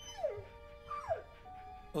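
Sustained film-score tones with two short downward-gliding whimpers from a dog, one just after the start and one about a second in.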